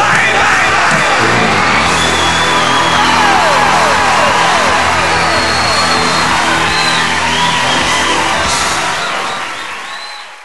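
The band holds the final chord of a live rock song while the crowd cheers, and the sound fades out near the end.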